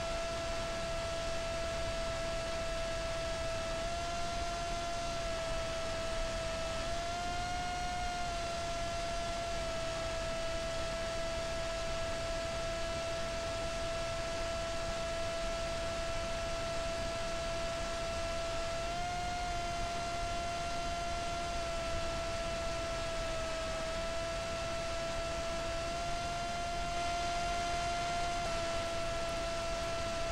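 Onboard recording of a small brushless motor and propeller (Emax RS2205) on an FPV flying wing in flight: a steady motor whine that rises and falls slightly in pitch, highest briefly about eight seconds in and again near nineteen seconds, over a constant wash of wind noise.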